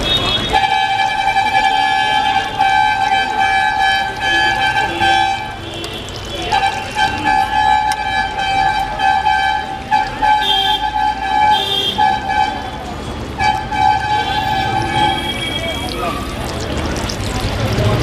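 A loud, steady, horn-like tone held for several seconds at a time with short breaks, stopping a few seconds before the end, over the sizzle of piyaji (onion fritters) deep-frying in oil.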